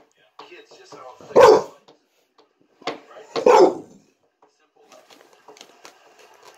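A pit bull-type dog barking twice, short single barks about two seconds apart, begging for crackers held out to it.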